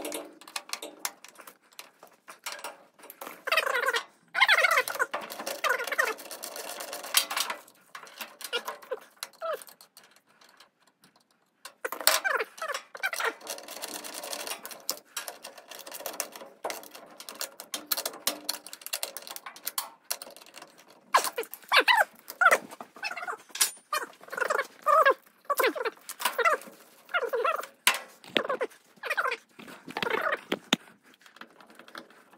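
Clicks, knocks and rattles of a screwdriver and metal seat-frame parts being worked on a mini excavator's operator seat, with bursts of short, high squeaks that rise and fall in pitch.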